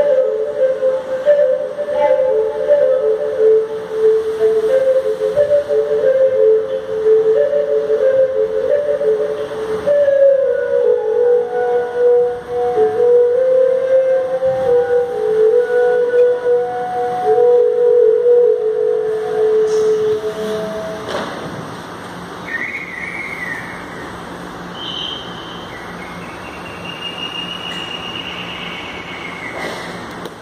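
Music: a slow melody of held, stepping notes on a flute-like wind instrument, which fades out about two-thirds of the way through. A few faint high whistling tones follow near the end.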